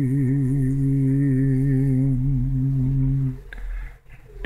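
A man singing unaccompanied, holding one long low note with a slight waver. The note stops about three and a half seconds in.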